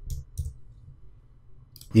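Two light computer clicks about a third of a second apart near the start, from keystrokes or the mouse button, then a quiet stretch of faint hum.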